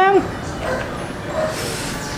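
An excited shout held on one note cuts off just after the start, followed by a quiet stretch with two faint, short, high vocal sounds.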